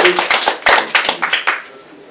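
A small audience clapping at the end of a talk. The applause dies away about a second and a half in.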